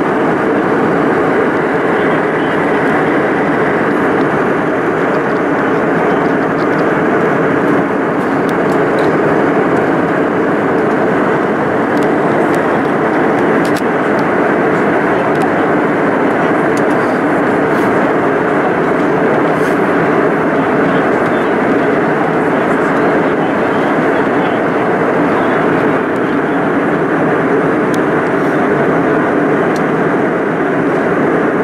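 Steady cabin noise of a jet airliner in flight at altitude, heard from inside the cabin: engine and airflow noise, even and unchanging.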